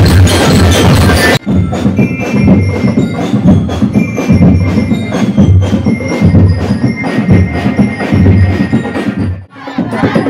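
Festival street percussion band: drums pounding a fast rhythm together with struck wooden and metal percussion. About a second and a half in, the sound changes abruptly to lighter, ringing strikes over the drum beat, and it breaks off briefly near the end.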